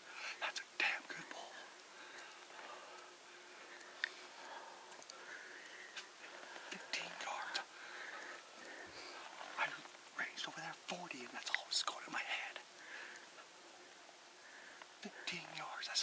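A man whispering in short bursts, with pauses between.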